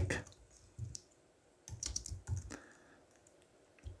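Computer keyboard keystrokes: a few scattered taps as a line of code is typed.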